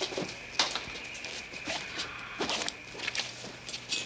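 Rustling, shuffling and scattered knocks as two people haul a limp man up to sitting on a hospital gurney, with clothing and bedding rustle and a few sharp creaks or knocks. Underneath runs a faint steady high-pitched tone.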